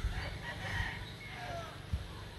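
A rooster crowing in the distance, faint, with its call sliding down in pitch toward the end, over a low rumble. A brief bump comes near the end.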